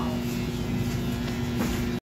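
A steady machine hum with two constant low tones over an even rumble.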